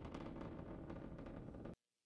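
Faint rumble and crackle of a Falcon 9 rocket's engines in ascent, cutting off abruptly near the end.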